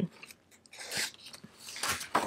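Soft paper rustling as pages of a printed guide are handled and turned, a faint scratchy rustle about a second in and another near the end.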